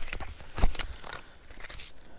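Handling noises from packing gear: a thump about two-thirds of a second in, amid light rustling and small knocks.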